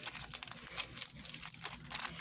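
Crinkling and rustling of a foil Pokémon booster-pack wrapper being handled and opened, in many quick little crackles.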